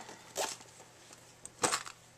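Handling noise from a small fabric backpack: two short rustles, a light one about half a second in and a louder one about a second and a half in.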